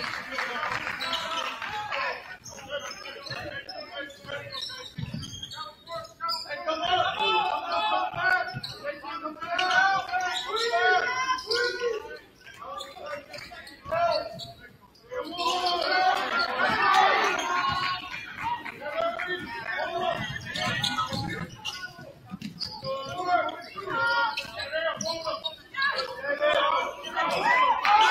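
Basketball being dribbled and bouncing on a hardwood gym floor during live play, with indistinct crowd and player voices throughout.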